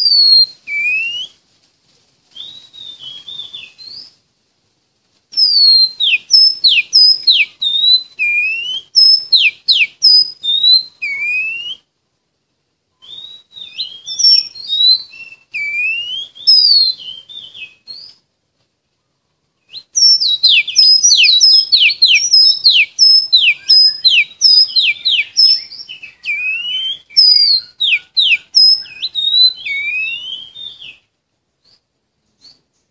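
Oriental magpie-robin singing: phrases of varied clear whistles and downslurred notes, broken by several short pauses, with a fast run of sharp descending notes about twenty seconds in.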